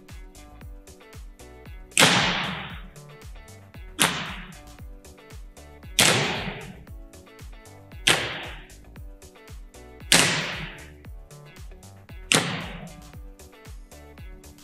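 Volleyballs served into a gym wall: six sharp smacks of open hand on ball and ball on wall, about two seconds apart, each ringing out in the gym. Faint background music runs underneath.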